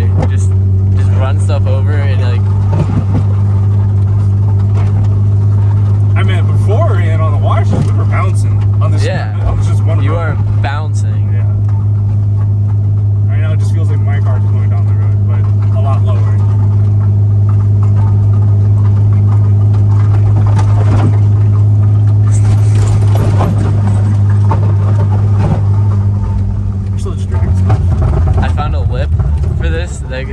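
BMW Z3 heard from inside the cabin while cruising: a steady low engine and road drone that holds an even pitch throughout.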